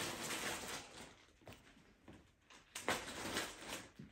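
Rustling of plastic zip-lock bags and packed clothing being pressed down into a suitcase by hand, in two spells: one at the start and another just before three seconds in.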